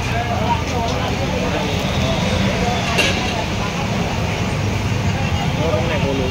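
Busy street background: a steady low rumble of passing traffic under indistinct voices, with one light click about halfway through.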